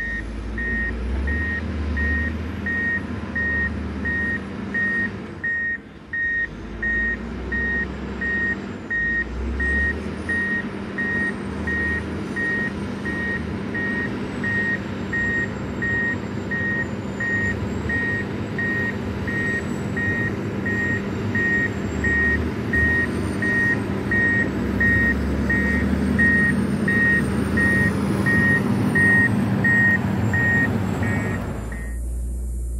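Reversing alarm of a John Deere 670GP motor grader beeping steadily over its running diesel engine as the grader backs up. Both grow louder as it comes closer.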